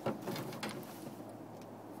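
Short splashes and knocks in the first second, the first the loudest, as a hooked brown trout thrashes at the water's surface against the side of a boat while it is grabbed by hand; then a low steady background of water and wind.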